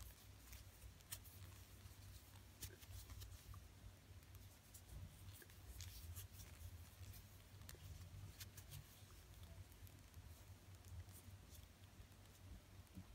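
Near silence with faint, scattered light clicks and rustles of a large plastic crochet hook working chunky T-shirt yarn, over a low steady hum.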